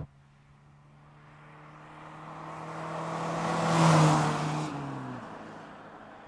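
Austin Maestro hatchback driving past: engine and tyre noise grow louder as it approaches and peak about four seconds in. Then the engine note drops in pitch as the car passes and fades away.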